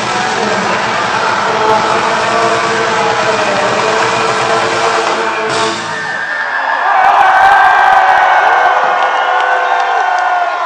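A live gypsy punk band playing loudly stops about halfway through, and the crowd breaks into cheering and whooping.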